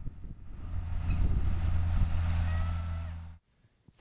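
Tractor engine running steadily as it pulls a corn planter, a deep, even hum. It cuts off suddenly about three and a half seconds in.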